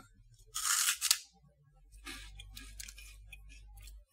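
A bite into a crispy Umaibo puffed-corn snack stick: one loud crunch about half a second in, then a run of small crisp crunches as it is chewed.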